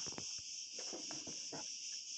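Faint handling of a 12-inch vinyl record being lifted and turned over, a few soft taps and rustles, over a steady high-pitched background whine.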